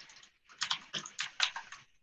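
Typing on a computer keyboard: a quick run of about seven or eight keystrokes starting about half a second in.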